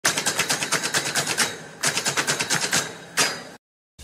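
A rapid series of sharp cracks, about six a second, in two bursts with a short break between them, then one last crack before the sound cuts out.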